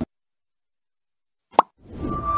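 Dead silence after a hard cut, then a single short pop-like blip from the channel's outro animation about a second and a half in, with the outro music starting to come in just after it.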